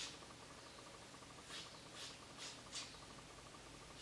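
Hairdressing scissors snipping through a thick bundle of long hair: one snip at the start, then four quick snips about a second and a half in.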